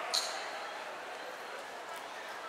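Tail of applause and faint voices fading away in a large, echoing hall, with one sharp click just after the start.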